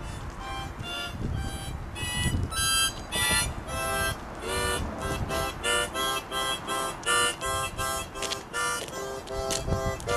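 Harmonica playing quick, rhythmic short notes and chords, with a few low thumps underneath.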